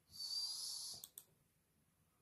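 A breath drawn in with a hiss, lasting about a second, followed by a computer mouse button clicking twice in quick succession, press and release.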